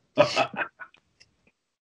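A man's brief burst of laughter, about half a second long just after the start, with a few faint traces after it.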